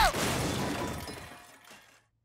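Cartoon crash sound effect: a shattering smash at the start that fades away over about a second and a half, cutting across a falling cry.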